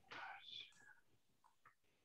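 A faint, brief whisper-like murmur of a voice in the first moments, then near silence.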